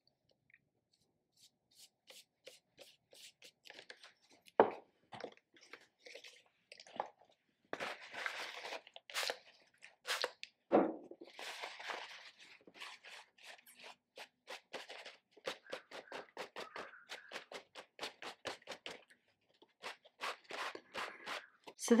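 Paper and art materials being handled on a wooden desk while working an art journal page: scattered small clicks and taps, with two longer rustling, scratchy passages about eight and twelve seconds in.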